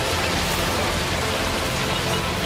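Cinematic sound effect of a titan transformation: a steady rushing noise after the blast, with faint music underneath.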